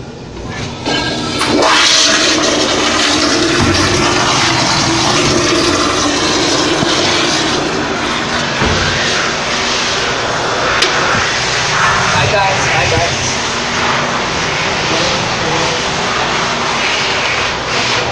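American Standard Madera flush-valve toilet being flushed: a loud rush of water that swells about a second in and runs on steadily.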